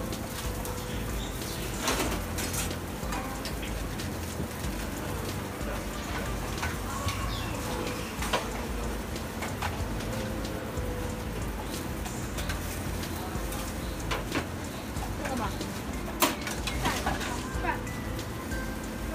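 Food frying on a flat griddle with a steady sizzle, broken by a few sharp metal clanks about 2, 8, 14 and 16 seconds in, with voices faintly in the background.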